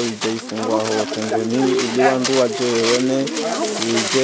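Voices singing a continuous, wavering melody over a steady low drone that drops away near the end.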